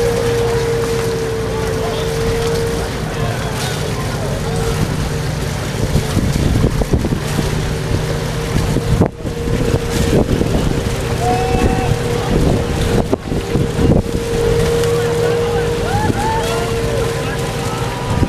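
Small outboard motors on inflatable dinghies running with a steady whine, under wind rumbling on the microphone that grows rougher in the middle, with distant shouting voices.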